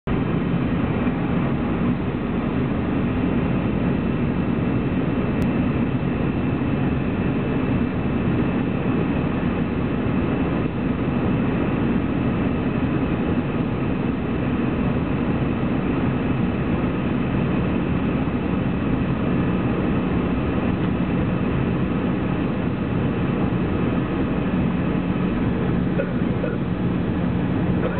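Airbus A321 cabin noise heard from a window seat beside the engine: jet engine and airflow making a steady, even noise with a low hum beneath it, while the airliner descends toward landing.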